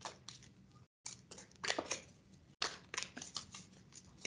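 A deck of tarot cards being shuffled by hand: a faint, irregular run of soft card snaps and rustles, cutting out briefly twice.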